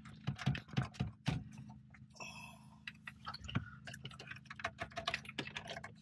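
Irregular clicks and taps of plastic connectors and the radio's metal case being handled as the antenna cable is worked out of the back of the pulled car radio, with a brief scrape about two seconds in. The plug is stubborn and does not come free easily.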